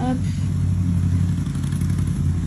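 A steady, low mechanical hum like a motor running, a deep drone that holds unchanged throughout.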